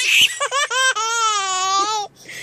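A baby laughing: a breathy gasp, a few quick short laughs, then one long drawn-out high laugh that carries through the second half.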